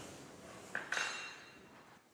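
Triple-expansion steam pumping engine running, its low mechanical hiss fading away. About three-quarters of a second in come two sharp metallic clinks close together, with a brief ring.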